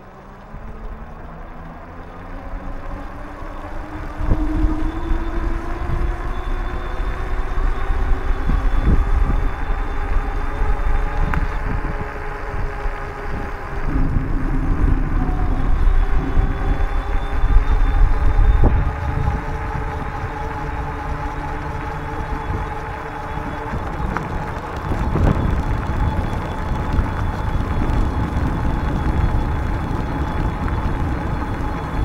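Wind rumbling and buffeting on the microphone of a camera riding along on a moving bicycle, gusting unevenly, with a hum that rises in pitch over the first few seconds as the bike speeds up and then holds roughly steady.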